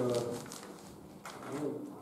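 A man's voice trailing off in a drawn-out, held syllable, then a short hesitant voiced sound about three quarters of the way through, between phrases of a lecture.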